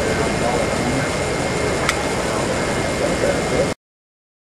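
Steady hum and hubbub of a busy exhibition hall, with indistinct voices in the background and a brief click about two seconds in. The sound cuts off abruptly shortly before the end.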